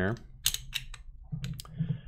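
A string of light, irregular clicks and taps from a propane tank dial gauge being handled and fitted onto the metal head of a float assembly.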